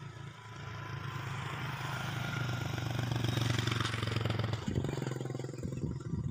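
A motor vehicle passing on the road, its engine hum and road noise growing louder for about three and a half seconds, then dropping away about five seconds in.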